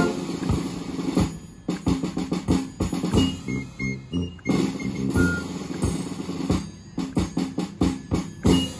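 Concert band of brass, woodwinds and percussion playing: a loud, full held chord breaks off at the start, then a quieter passage of short, detached low notes in a rhythmic pattern with brief pauses.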